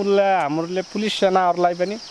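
A woman talking, with a steady high-pitched insect trill, typical of crickets, running behind her voice.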